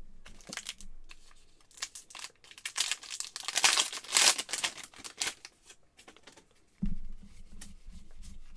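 A foil trading-card pack being torn open and crinkled by hand: a few seconds of crackling and tearing, loudest in the middle. Near the end there is a sudden low thump.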